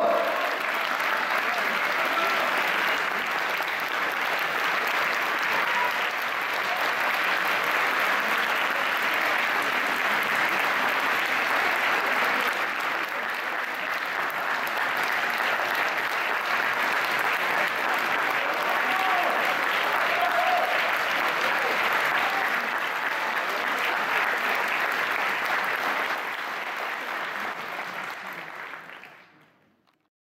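Large audience applauding steadily after a stage dance, the clapping thinning and fading out over the last few seconds.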